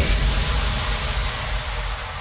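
DJ mix sound effect: a sudden burst of white noise over a deep low boom, fading out slowly and evenly.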